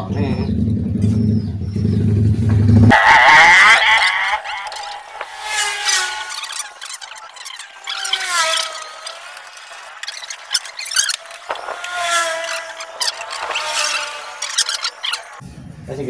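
A steady low rumble cuts off about three seconds in. After that, a long run of squealing and scraping with wavering pitch as a PVC well pipe is worked by hand.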